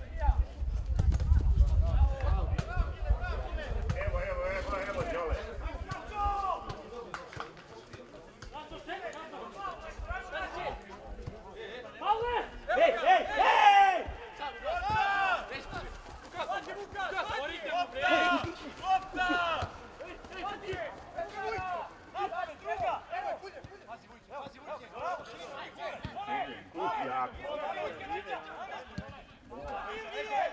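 Men's voices shouting and calling across an open football pitch, with scattered distant chatter, loudest about halfway through. There is a low rumble in the first few seconds.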